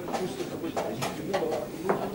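Several short, sharp clicks and taps of wooden chess pieces set down and chess clock buttons pressed during blitz games, over a low murmur of voices in the hall.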